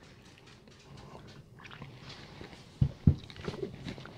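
Faint mouth and lip sounds of people tasting a drink after a sip, then two soft thuds a moment apart near the end as two drinking tumblers are set down on the table.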